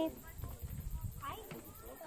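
Faint voices in the background, with a low rumble on the microphone.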